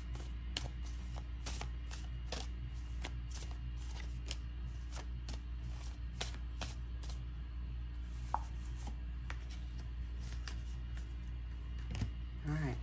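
An oracle card deck being hand-shuffled. The cards give quick, irregular clicking taps as they slide and knock together, several a second at first and thinning out in the second half.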